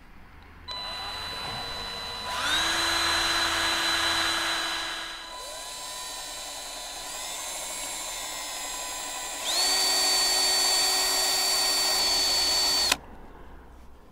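Cordless drill (Greenworks G24) boring a small dimple into the metal of a caravan's corner steady leg, to seat the cone-tipped grub screws of a leg lock. The motor starts about a second in at low speed, speeds up, slows again for several seconds, speeds up once more and stops suddenly about a second before the end.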